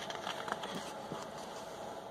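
A paper page of a picture book being turned by hand: a few brief paper rustles in the first second or so.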